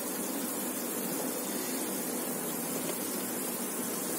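Steady hiss of water simmering in a non-stick pan with onions, peas and carrots, the cooking water for rava upma heating on the stove.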